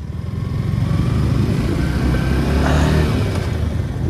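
Yamaha R15 V4's single-cylinder engine running steadily under way, heard from the rider's seat with wind noise on the microphone.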